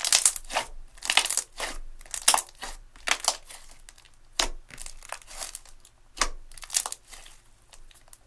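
Thick slime squeezed, pressed and stretched by hand, giving a run of short crackles and squishes in irregular clusters, the loudest near the start and a little over two seconds in.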